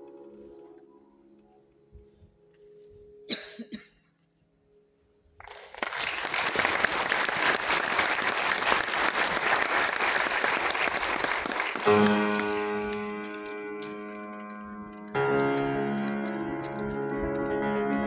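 A grand piano's final chord rings and dies away, followed by a short pause. Audience applause then runs for about six seconds. The piano starts again with sustained chords, a new loud chord about three seconds later.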